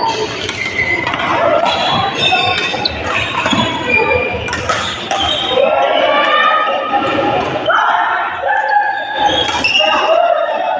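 Busy indoor badminton hall: players' and onlookers' voices echo through the large room, mixed with short squeaks of shoes on the court floor and sharp racket strikes on the shuttlecock.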